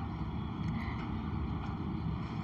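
Steady low background rumble with a faint hiss, the recording's noise floor, with no distinct event.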